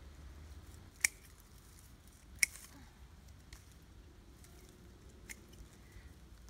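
Hand pruning shears snipping through blackberry bramble stems: two sharp snips, about one and two and a half seconds in, then several fainter clicks.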